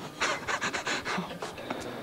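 Breathy, mostly voiceless laughter: a quick run of airy puffs for about a second and a half, then it stops.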